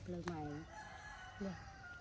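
A rooster crowing: one long, drawn-out call held on a high note for over a second.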